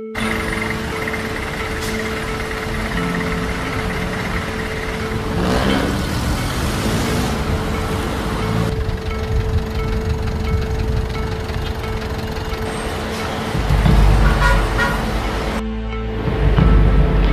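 Road traffic noise, vehicles running and passing, with a steady held music tone under it. Near the end a louder low engine rumble comes in, then cuts off briefly just before the end.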